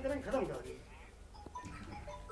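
Faint speech trailing off in the first half-second, then a quiet pause with low background noise on a remote interview line.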